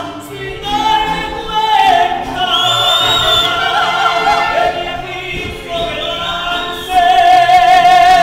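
A group of singers performing live, several voices together with strong vibrato and long held notes, the loudest a long held note near the end.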